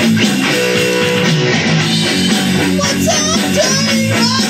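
Electric guitar playing a rock piece over a band backing with a steady rhythm. A chord rings out about a second in, and wavering lead notes with vibrato come in near the end.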